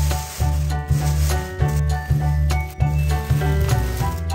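Background music with a steady bass beat, about two bass notes a second, over pitched melody notes.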